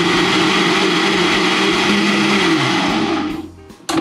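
Countertop blender motor running at speed, pureeing a tomato sauce: a steady whine over churning noise. About three seconds in it is switched off and winds down, the pitch falling. A short knock follows near the end.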